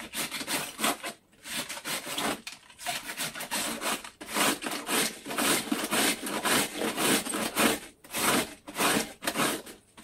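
Multi-blade cabbage shredding knife scraping across the cut face of a head of white cabbage, slicing it into fine shreds. Rapid back-and-forth rasping strokes, about three a second, with a few brief pauses.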